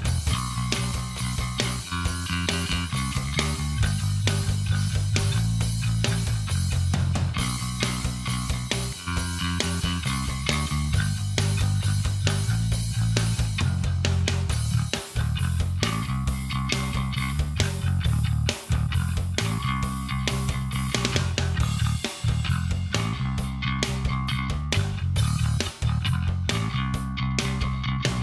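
Catalyst Tigris electric bass guitar playing a bass line of changing low notes, recorded direct through an Ampeg SVT amp simulation on its Rock A preset. It gives a hard, direct, piano-like bass tone.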